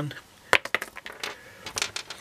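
Handling noise close to the microphone: a string of short sharp clicks and knocks as a hand moves the small capacitor in front of the camera, the loudest about half a second in and another cluster near the end.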